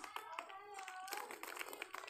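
Snack pieces shaken out of a small plastic snack packet, dropping into a plastic bucket as a quick run of light clicks, with faint crinkling of the packet.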